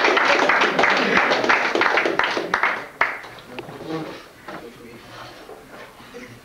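Audience applauding, dense clapping that stops fairly abruptly about three seconds in, leaving quieter voices.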